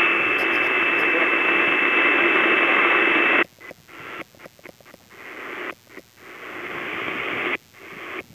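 AM radio receiver hissing with static and a steady high whistle. About three and a half seconds in, the hiss starts cutting out and coming back in short choppy gaps.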